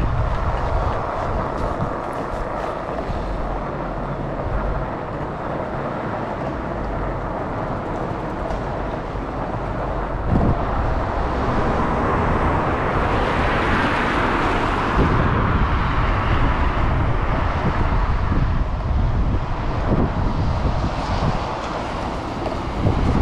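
Wind rushing over the microphone with a deep rumble, growing a little louder and brighter about halfway through.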